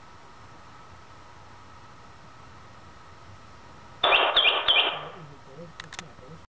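Bird song relayed over a telephone line: a steady hiss for about four seconds, then a loud, distorted burst of three quick, repeated downward-slurred notes lasting about a second, followed by a couple of sharp clicks near the end.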